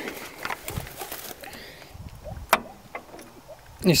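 Footsteps and light handling knocks, with one sharper click about two and a half seconds in; the tractor's engine is not running.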